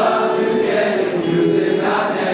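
A large group of teenage boys singing together, with several voices holding long notes in the middle.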